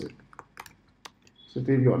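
Computer keyboard typing: a quick run of separate key clicks as a word is typed, stopping after about a second.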